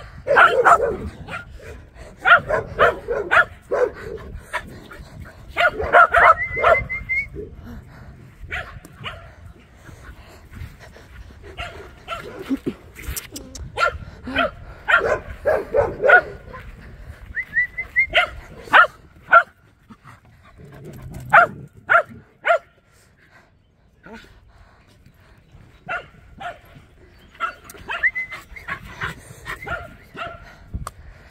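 Dogs barking in repeated short bursts, on and off.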